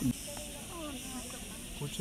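Faint voices in the background over a steady hiss.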